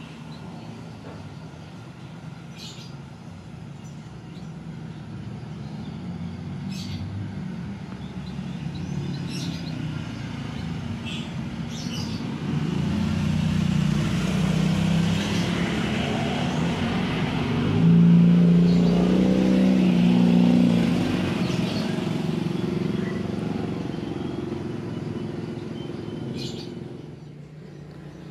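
A motorcycle passing on the road: its engine grows louder over several seconds, is loudest about two-thirds of the way through, then fades away. Birds chirp briefly now and then.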